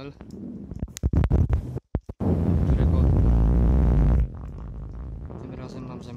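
Loud low rumble on the microphone of a handheld camera being carried, with a few knocks and a brief cut-out about two seconds in. The rumble drops off sharply about four seconds in.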